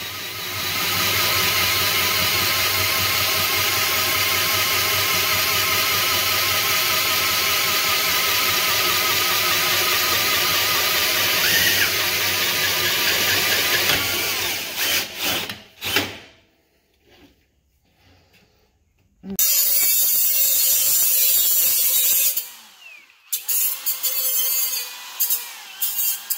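Drill press running steadily with its bit cutting into steel clamped in a vise, lubricant spraying onto the cut, for about fourteen seconds before it stops. After a short quiet gap, a cordless angle grinder grinds metal, first in one run of about three seconds and then in short bursts.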